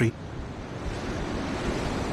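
Rough open sea: waves breaking and rushing, with wind, swelling gradually in level.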